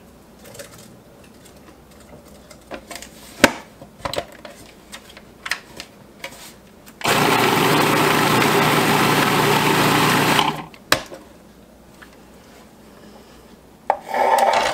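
Electric food processor running once for about three and a half seconds, chopping cranberries and stopping suddenly so they are left a little chunky. Before it, several clicks and knocks of the plastic bowl and lid being handled and fitted.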